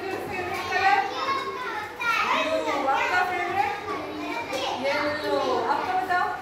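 Several young children's voices talking and calling out over one another in a classroom.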